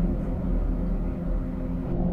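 A steady low drone with a few held low tones, without speech, cut off by an edit near the end.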